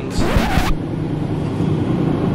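A cabin door's lever handle coming off in a hand: a short sharp scrape-and-knock burst about half a second long just after the start. Then a steady low hum, the yacht's engines running as it moves off.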